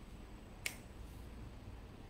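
A single short, sharp click about two-thirds of a second in, over faint room tone.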